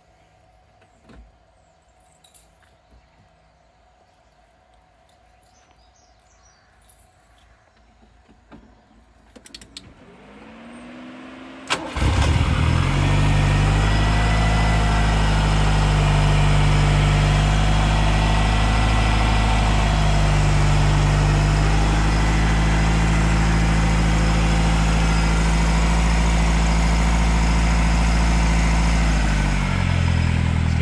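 1985 Ford Escort RS Turbo Series 1's turbocharged 1.6-litre four-cylinder engine started from cold: after a quiet pause, a short crank about eleven seconds in, then it catches just before twelve seconds and settles into a loud, steady idle.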